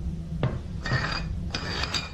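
Small ceramic dishes handled on a tiled kitchen counter: one sharp clink about half a second in, then two short scraping sounds as dishes slide across the tile.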